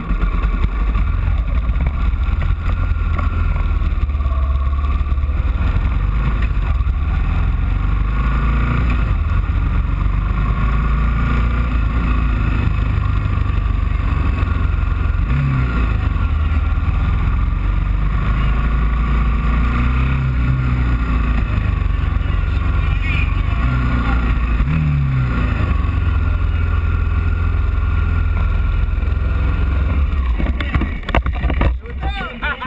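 Onboard sound of a Moto3 racing motorcycle riding at low speed: a steady low rumble of engine and wind on the camera's microphone, with a few short rises in engine pitch.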